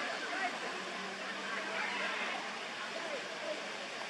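Steady outdoor background hiss with faint scattered sounds over it, and a faint low hum that comes in about a second in.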